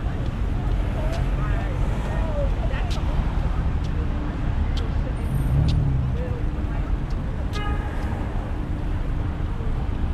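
City street sound: a steady rumble of road traffic, with passersby's voices and scattered sharp clicks. A brief pitched tone sounds about three quarters of the way through.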